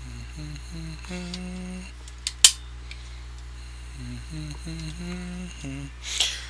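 A man humming a tune to himself in held, stepping notes, with a couple of sharp clicks about two and a half seconds in, over a steady low hum.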